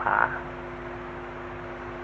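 The last syllable of a man's speech, then a steady low hum with hiss from an old sermon recording. The hum holds two constant pitches throughout.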